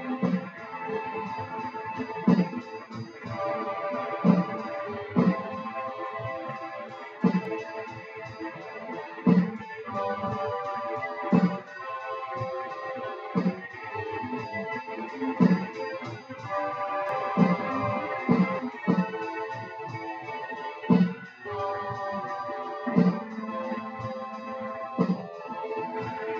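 Layered solo band jam: a looped electronic drum beat, with a strong hit about every two seconds, and held keyboard chords that change every couple of seconds, with electric guitar played live over them.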